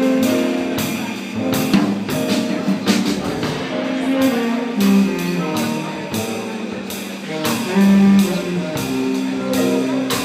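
Live jazz from a quartet: tenor saxophone over piano, double bass and drum kit, with steady drum and cymbal strikes.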